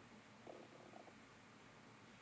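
Faint, brief whirr of a Mindray BeneFusion VP3 volumetric infusion pump's peristaltic mechanism as it delivers fluid during accuracy calibration. It comes as one short burst about half a second in and recurs roughly every two seconds, over near-silent room tone.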